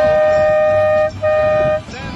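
A horn blown in two blasts, each at one steady, unwavering pitch: a long one that stops about a second in, then a shorter one that ends near the end.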